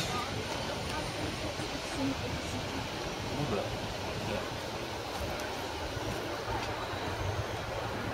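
Outdoor city ambience: a steady low rumble of background noise with faint distant voices.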